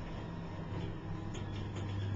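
ThyssenKrupp service elevator running, heard from inside the car as a steady low hum that grows louder near the end.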